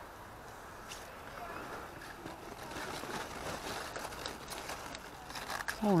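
Large cauliflower leaves rustling and crinkling as they are pushed aside by hand, the rustle building from about two seconds in.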